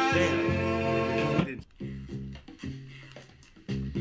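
Soul record playing on a turntable: a passage with singing cuts off abruptly about a second and a half in, leaving sparse plucked notes with short gaps between them.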